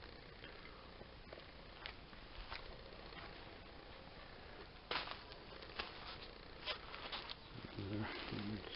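Quiet background with a few faint, irregular crunching steps on a gravel floor, the loudest about five seconds in.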